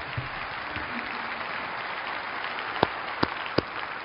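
Audience applauding steadily, with three louder single claps standing out near the end.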